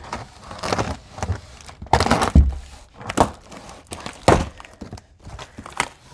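A heavy cardboard carton wrapped in plastic being pulled open by hand: rustling and scraping of cardboard and plastic wrap, with about six dull thumps, the loudest and deepest about two and a half seconds in.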